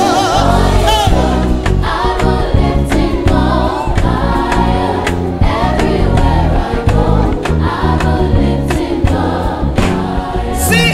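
Live afro-groove gospel praise music: a lead singer and a backing choir singing over a band with a steady, regular drum beat.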